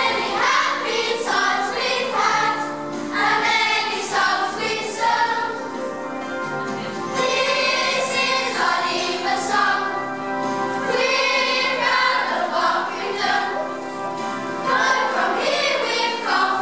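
A children's choir singing a song with musical accompaniment, the voices moving through a melody of sustained notes.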